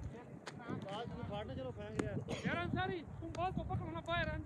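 Players' voices calling out across an open cricket ground, with a couple of sharp knocks, about half a second and two seconds in.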